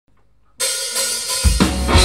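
Live hard rock band with drum kit, cutting in suddenly about half a second in with cymbals ringing. About a second and a half in, heavy bass drum and bass guitar hits join as the full band comes in loud.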